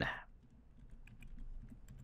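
Computer keyboard typing: a faint, quick run of about half a dozen keystrokes as a single word is typed.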